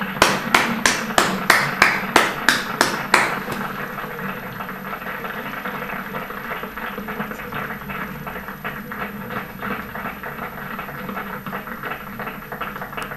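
Applause at the end of a piece. For the first three seconds one pair of hands close to the microphone claps loudly, about four claps a second, and then the audience's clapping goes on more softly.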